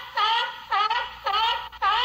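A honking sound effect: short, identical horn-like honks repeated about twice a second, each note dipping and then rising in pitch.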